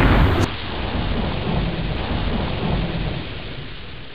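Rumbling, thunder-like noise effect on a TV station ident. It is loudest at the start, then settles into a steady rushing rumble that slowly fades away.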